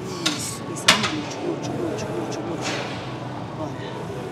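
Two sharp metallic clanks from a plate-loaded hip thrust machine as the lift begins, the second louder, over a background of gym chatter.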